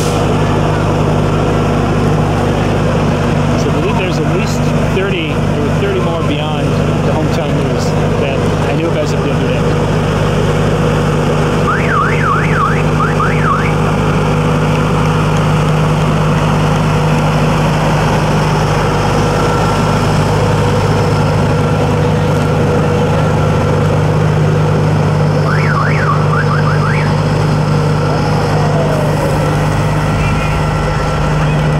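Steady, loud low drone of a semi truck's diesel engine running as it moves past at parade pace. Two short bursts of rapid warbling high chirps cut in, about twelve seconds in and again near twenty-six seconds.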